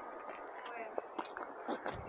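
Quiet outdoor background with faint, indistinct voices and a few light clicks.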